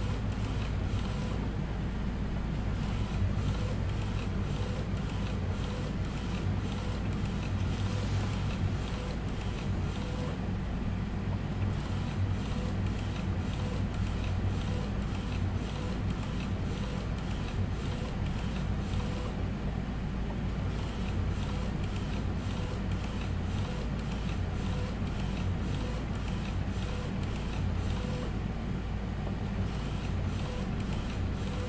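Epson L805 inkjet printer printing onto a PVC ID card in its card tray: the print-head carriage shuttles back and forth in a steady, even rhythm over a low running hum as the tray feeds the card through.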